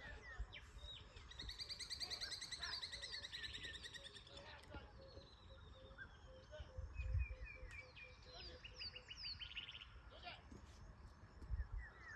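Wild birds singing and calling: fast high trills and short chirps, with a run of lower, evenly repeated notes in the middle. Two dull low thumps, the louder about seven seconds in and another near the end.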